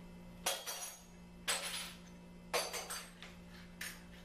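Thin steel sheet metal being handled and shifted on a concrete floor: four short metallic clanks with a brief ring, about a second apart, the last one smaller.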